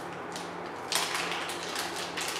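Thin clear plastic packaging bag crinkling and crackling as it is opened by hand to take out a coiled cable, a few crackles at first, then a dense run from about a second in.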